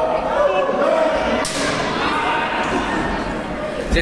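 Spectators' voices echoing in a large hall, with a sharp impact from the wrestling ring about a second and a half in and a heavy thud on the ring near the end.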